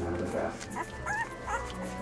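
Week-old red standard poodle puppies squeaking and whimpering, about four short high cries that bend in pitch. The owner takes the crying for hunger.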